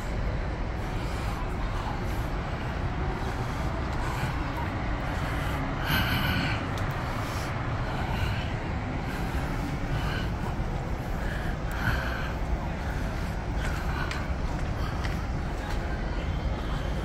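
Steady outdoor urban background noise with a low rumble, and a few brief snatches of distant voices, the clearest about six and twelve seconds in.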